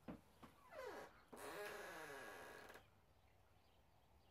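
A faint animal call: a short whine sliding down in pitch about a second in, then a longer, breathy call, also falling in pitch, that stops near three seconds.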